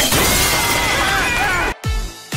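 A large aquarium's glass shattering and water bursting out in a dense, loud crash, cut off suddenly near the end. A deep electronic beat then starts.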